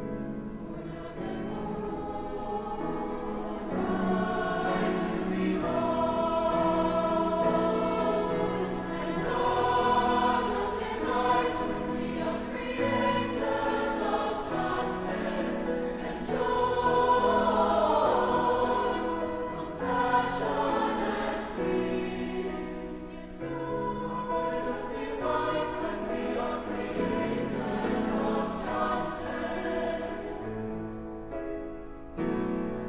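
Mixed choir singing sustained notes in parts, growing louder about four seconds in.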